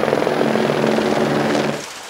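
Several helicopters flying overhead: a steady, loud drone with a rapid rotor beat, dropping away near the end.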